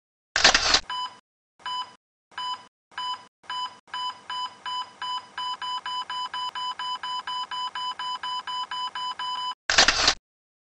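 Electronic intro sound effects: a short burst of noise, then a run of short electronic beeps that start about two-thirds of a second apart and quicken to about four a second, ending in a second burst of noise near the end.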